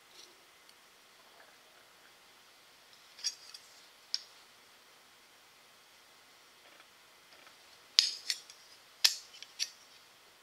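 A bent aluminum part and a metal protractor being handled: a few light metallic clicks and clinks, a pair about three to four seconds in and a quick cluster near the end, with quiet room tone between.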